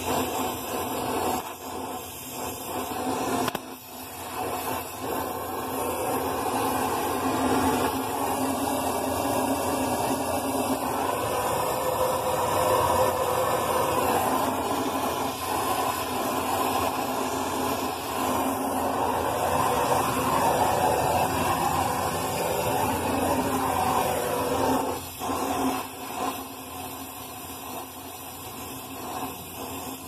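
Brazing torch flame hissing steadily while copper refrigerant pipe is brazed at a replacement compressor. It grows louder a few seconds in and eases off near the end.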